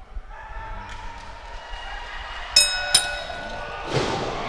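A ring bell struck twice in quick succession about two and a half seconds in: a sharp metallic clang that rings on with clear high tones, marking the start of the match. Faint crowd voices come before it.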